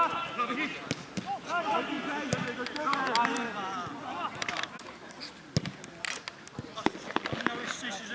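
Men shouting on an outdoor football pitch during a shot on goal, with sharp knocks of the ball being kicked and bouncing. The shouts fill the first few seconds, then fade to scattered knocks.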